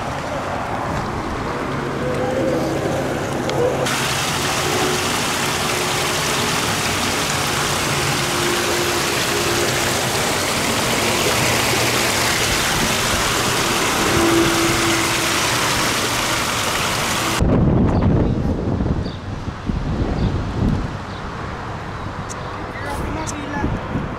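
Shallow water running over rocks close by: a loud, steady rushing hiss that starts suddenly about four seconds in. Near the end it cuts off abruptly, giving way to lower, uneven rumbling.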